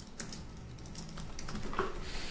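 Typing on a computer keyboard: a quick run of keystrokes as a short phrase is typed.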